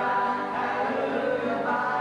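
Live gospel group singing held notes in harmony, with acoustic guitar accompaniment.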